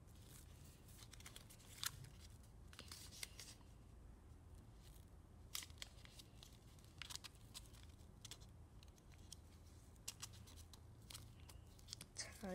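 Faint rustling and crisp crackles of shiny foil-faced origami paper being folded and pressed flat by hand, in scattered short bursts, the sharpest about two seconds in.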